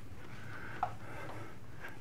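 Steady low hum of a ship's interior corridor. A single short, high squeak that falls in pitch comes a little before halfway.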